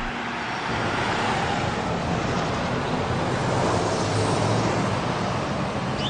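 Road traffic passing: a steady rush of vehicle engines and tyres on a street, with minibuses and cars going by.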